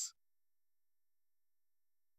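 Near silence, with only a faint, steady high-pitched tone throughout.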